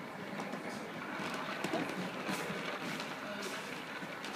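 Indistinct background chatter of several people in a room.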